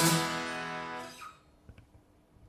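Acoustic guitar's final strummed chord ringing out, then dying away sharply about a second in, followed by a few faint clicks.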